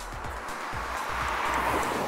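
Mercedes-Benz GLC 300d Coupe approaching at highway speed: a rush of tyre and wind noise that grows steadily louder.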